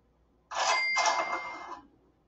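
Cash-register 'cha-ching' sound effect playing about half a second in, a short rattle followed by a ringing bell tone, dying away after about a second and a half. It is the signal that reward points (VanBucks) have been added to a student's account.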